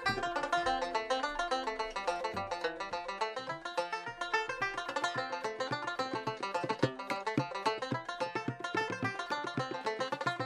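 A 1928 deluxe banjo played live in a set of reels, a fast, unbroken run of plucked notes.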